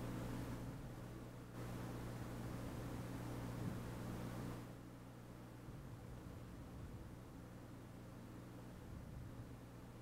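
Faint steady low hum with a light hiss, a little quieter from about halfway through.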